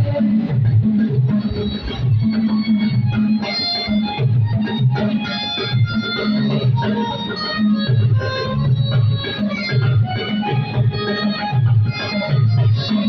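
Instrumental church band music: electronic organ chords held over a pulsing bass line, with drum beats.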